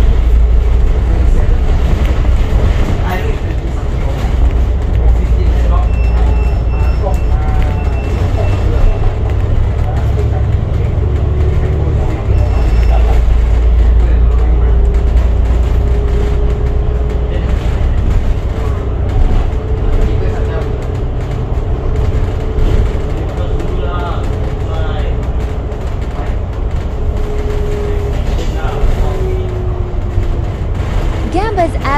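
Alexander Dennis Enviro500 double-deck bus driving, heard inside the cabin: a loud, steady low engine and road rumble, heaviest in the first half as it pulls away. A steady drivetrain whine joins about a third of the way in and falls in pitch near the end as the bus slows.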